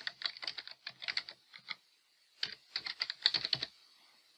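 Typing on a computer keyboard: a quick run of keystrokes for nearly two seconds, a short pause, then a second run that stops near the end. The two runs are a user name and then a password being entered.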